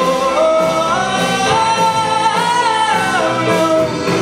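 Live rock band with trumpet, keyboard, drums and guitar playing. A slow, held melody line steps up in pitch, holds, and comes back down near the end over the band.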